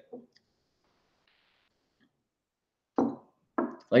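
Near silence for about three seconds, then a man's voice starts again near the end.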